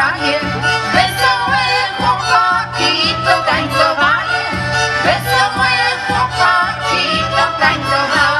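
Live folk band playing: fiddles carry the tune over a steady beat of about two a second.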